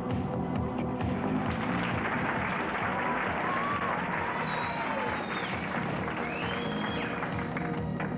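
Background music with a steady beat, and a few sliding, whistle-like notes in the middle.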